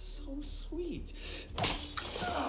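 Dialogue from the episode's soundtrack, then about one and a half seconds in a sudden loud crash of shattering glass with a ringing tail.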